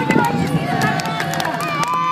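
Hoofbeats of two horses galloping close by on turf, heard under the voices and calls of a watching crowd.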